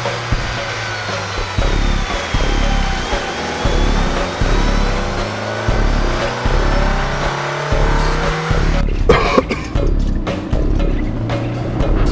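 Film soundtrack of background music over car engine and road noise, with pitch glides as the engines rev and cars pass. A run of sharp knocks or clicks comes about nine to ten seconds in.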